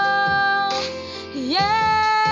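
A teenage girl singing solo over a quiet accompaniment. She holds one long steady note, breaks off about three-quarters of a second in, then slides up into the next note about a second and a half in.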